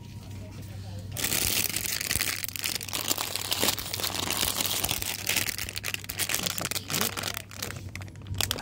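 Shiny metallised-plastic blind-bag packets crinkling and rustling as they are rummaged through and handled, starting about a second in.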